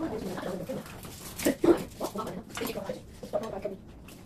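Indistinct children's voices talking at a table, muffled by distance from the microphone, with one louder vocal outburst about one and a half seconds in.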